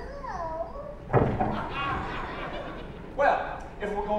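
Stage actors' voices in a live theatre recording, with loud exclamations about a second in and again past three seconds.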